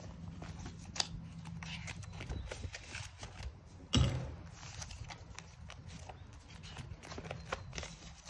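Handling noise from a ring binder, its plastic zip pocket and paper cash being moved about on a wooden table: scattered small clicks and rustles, with one louder knock about four seconds in.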